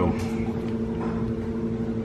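A steady machine hum made of several fixed low pitches, holding unchanged, with a faint click just after the start.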